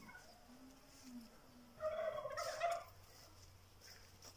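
A bird call: one short, wavering call about two seconds in, lasting about a second, over a quiet outdoor background.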